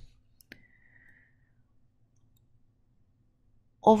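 A single sharp click about half a second in, trailed by a faint, thin high tone lasting about a second, then near silence. A woman's voice starts right at the end.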